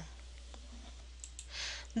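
A short pause in a spoken lecture: quiet room tone with a steady low hum, a couple of faint clicks about a second in, and a soft intake of breath near the end just before the voice resumes.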